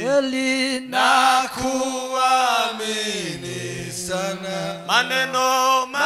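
Men singing a slow hymn through a microphone, in long held notes that glide gently between pitches.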